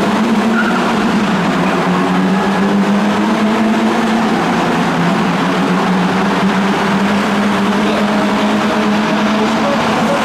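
A field of Toyota 86 and Subaru BRZ race cars pulling away from the starting grid together, their flat-four engines under acceleration blending into one steady mix of engine notes.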